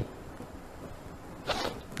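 A pause between a man's spoken phrases: faint steady hiss, then a short breath-like hiss about one and a half seconds in, just before he speaks again.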